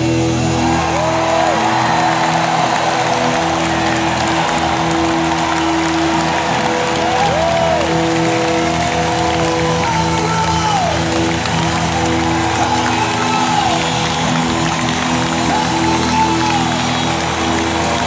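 A live rock band holds a sustained chord with electric guitar, while sliding guitar notes rise and fall above it about once every couple of seconds. Arena crowd cheering and applause run underneath.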